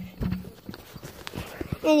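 Dogs' claws clicking and tapping on a wooden step in scattered light taps. A person's voice starts speaking near the end.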